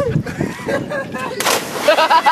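A diving board thumping under running bare feet as a boy springs off it, then a loud splash as he hits the water about a second and a half in.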